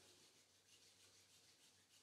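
Near silence, with only a faint sound of palms rubbing together.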